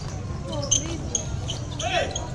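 Basketball game crowd talking and calling out, with a basketball being dribbled on the court and a sharp knock about three-quarters of a second in.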